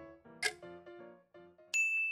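Soft background music with a sharp tick about once a second, like a countdown timer, ending in a bright bell ding near the end. The ding marks the end of the answer time.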